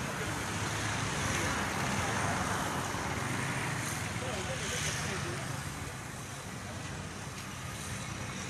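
Steady road traffic noise from passing vehicles, a little louder in the first few seconds and easing toward the end, with faint voices in the background.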